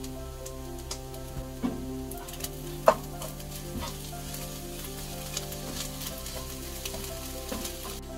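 Fried rice sizzling in a nonstick frying pan as it is stirred with a wooden spatula, the spatula clicking and scraping against the pan, with a sharp knock about three seconds in. Soft background music with held notes plays underneath.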